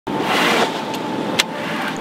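Steady rush of wind and water aboard a small sailboat under way, with two sharp clicks around the middle.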